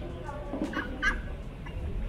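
A white domestic duck giving two short calls about a second in, over a low background rumble.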